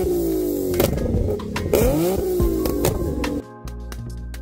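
A car engine revving through its exhaust, its pitch sweeping up and down several times over background music. The engine sound ends about three and a half seconds in, leaving only the music.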